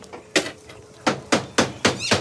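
Steel rebar rods clanking as a bundle is stood on end and set down. There is one sharp metallic strike about a third of a second in, then a run of four quick strikes in the second half.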